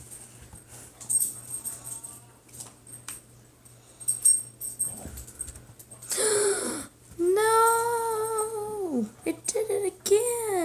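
Light clicks and taps, then a long drawn-out vocal whine in the last few seconds, held steady and falling in pitch at its end, after a shorter breathy one.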